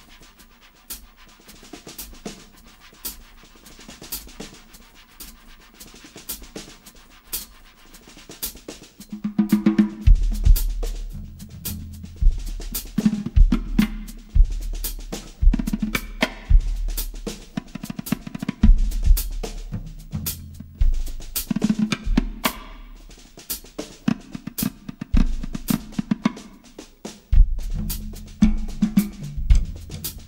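Improvised drum-kit playing. For about the first ten seconds it is soft, quick taps on the drums and cymbals, played with a hand and a stick. Then bass drum, toms and snare come in loud in a busy groove.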